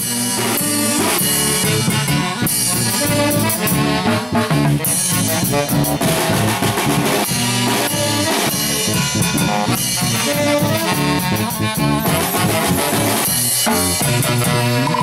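A huaylas band of saxophones, electric bass and drum kit playing live, the saxophones in harmony over a steady drum beat.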